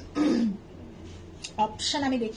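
A woman's voice: a short voiced sound just after the start and more brief vocal sounds near the end, including a throat clearing.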